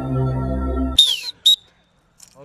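Background music with a steady low drone stops abruptly about halfway through. Two short, sharp whistle blasts follow about half a second apart, the first dropping slightly in pitch: a sports whistle at football training.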